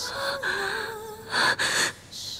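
A woman crying, drawing two sharp gasping sobs in quick succession about one and a half seconds in, over a slow ballad sung by a woman.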